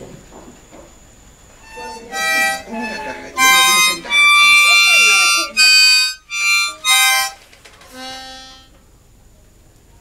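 A small harmonica blown by a toddler in a run of loud, uneven chord blasts that start about two seconds in, the longest held for over a second in the middle. The playing trails off into a faint last note about eight seconds in.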